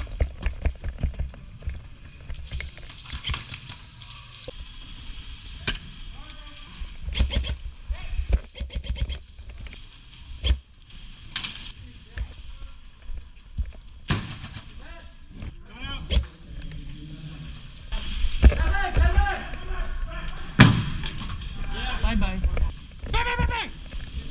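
Close-quarters airsoft game: scattered sharp cracks and knocks of airsoft guns firing, footsteps and gear, with players' voices calling out, louder and busier in the last few seconds.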